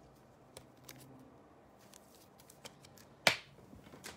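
Faint light ticks and rustles of baseball trading cards being handled, with one sharp click about three seconds in as a card is set down or snapped against the stack.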